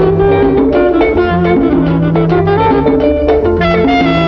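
Instrumental passage of a Latin-style (salsa) band recording with no vocals: plucked guitar lines over a steady, moving bass line.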